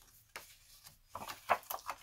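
Folded white cardstock being handled on a work surface: light rubbing with a few soft taps, the sharpest about one and a half seconds in.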